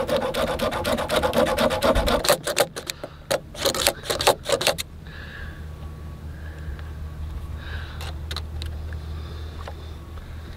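Hacksaw cutting through a metal L-bracket: quick, repeated rasping strokes of the blade on the metal for about five seconds. Then the sawing stops, leaving a low steady hum and a few faint clicks.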